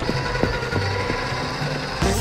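Wire shopping cart rolling along with its wheels rattling.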